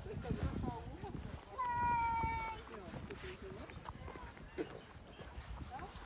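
Street ambience of people talking faintly, with low footstep thumps. About one and a half seconds in comes a single loud, high call held for about a second, falling slightly in pitch.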